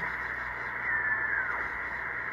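Elecraft K3 receiver audio on 20-metre SSB being tuned across the band: a steady hiss, cut off above about 2 kHz by the receive filter, with the NR-1 noise-reduction unit and the noise blanker switched on. A faint whistle falls in pitch about a second in as the dial sweeps past a carrier.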